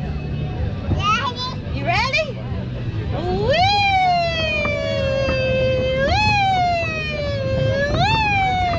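A young child's high voice: two short calls, then from about three seconds in long drawn-out high cries, each jumping up in pitch and sliding slowly down, three times in a row.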